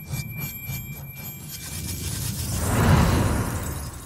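Layered cinema-logo sound design played back from a mix: a fast patter of glassy ticks over a thin, high shimmering tone, giving way to a swelling breath-like whoosh. The whoosh builds to its loudest about three seconds in, then falls away.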